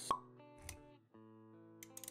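Intro sound design: a sharp pop just after the start and a soft low thud a little later, over sustained synth-like music notes that drop out briefly around the middle and then return.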